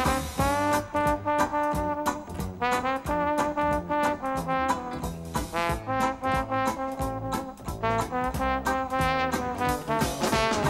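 Trombone solo in traditional jazz, a melodic line of held and moving notes, over a rhythm section keeping a steady swing beat.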